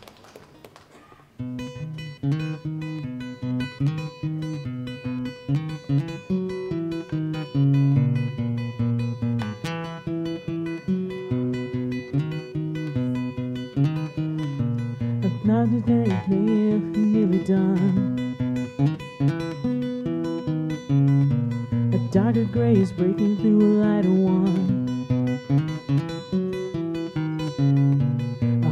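Solo acoustic guitar playing a song's instrumental introduction. It starts about a second and a half in, after a brief quiet moment.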